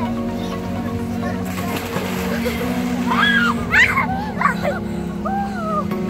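Background music with steady held tones, overlaid from about three seconds in by children's high voices calling out, with light water sloshing from the pool.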